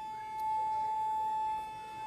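A single steady whistle-like tone held at one unchanging pitch, growing a little louder in the middle.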